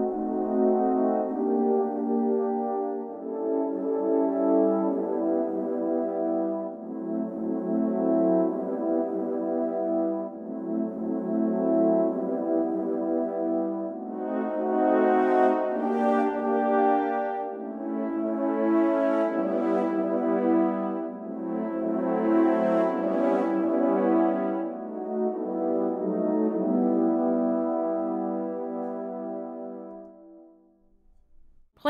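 Sampled French horn section playing sustained, closely voiced chords around middle C, swelling and easing off phrase by phrase, then fading out near the end.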